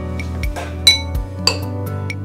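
Metal cutlery clinking against dishes, a sharp ringing clink about a second in and another about half a second later, over soft background music.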